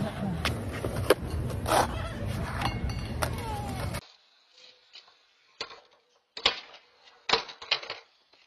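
Skateboard clacks over steady outdoor noise and voices. About four seconds in, the sound cuts to a quiet background with a few sharp, separate knocks of a skateboard's tail and wheels hitting pavement.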